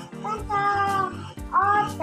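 Two drawn-out cat meows, the second rising and then falling, over background music with a steady beat.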